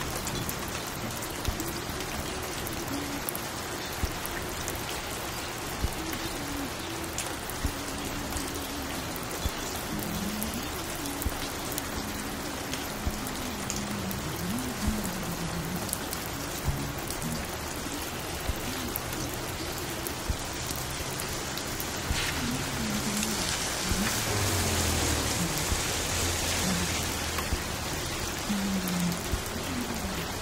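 Steady rain with scattered sharp drop ticks, over faint, muffled music in a low register. About three-quarters of the way through, a louder hiss swells in with a low hum beneath it.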